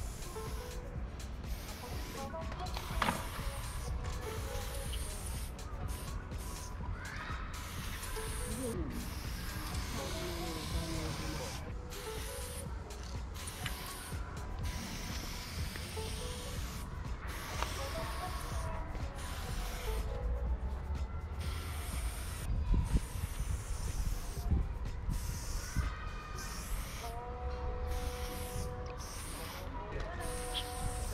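Aerosol spray paint can hissing in repeated bursts, with short breaks between strokes as lines are painted.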